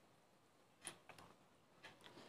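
Near silence with a few faint, short clicks: one about a second in and one near the end.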